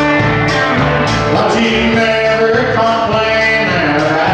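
Live country band playing: acoustic guitar, electric guitar, bass and drums with a steady beat, and a male voice singing.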